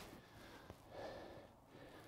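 Near silence: faint outdoor background, with a soft breathy swell about a second in.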